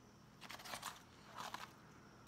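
A spoon stirring moist cauliflower-rice biryani in a disposable aluminium foil tray: a few faint, soft scraping and rustling strokes.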